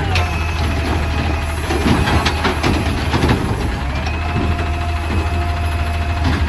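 McNeilus automated side-loader garbage truck idling while its hydraulic arm empties a wheelie bin and sets it back down: knocks and clatter in the first few seconds, then a steady whine from about four seconds in over the engine's low hum.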